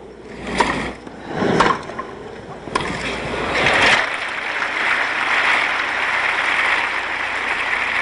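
A few sharp tennis-ball hits about a second apart during a rally, then a crowd applauding steadily from about three seconds in as the point ends.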